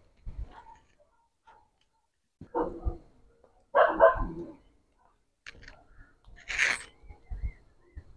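A dog barking in a few short separate bursts, the loudest about four seconds in.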